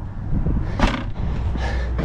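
Low rumble of wind buffeting the microphone, with a brief knock about a second in.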